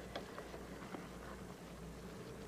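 Faint clicks and scrapes of a spoon stirring rice and vegetables in a stainless steel pot, over a low steady hum.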